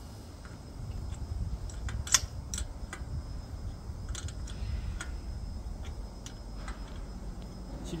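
Open-ended 13 mm spanner clicking on the 8 mm set bolt of a stretcher's swivel caster as the bolt is worked loose counterclockwise: a scatter of light metal clicks, the sharpest about two seconds in, over a low steady rumble.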